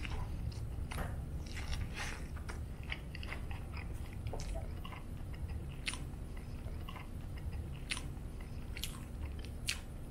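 Close-up mouth sounds of a person biting into and chewing a soft-shell beef taco: irregular wet clicks and smacks throughout.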